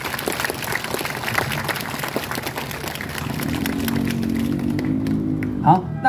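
Audience clapping for a few seconds. Then a sustained chord of music is held, with a voice briefly heard near the end.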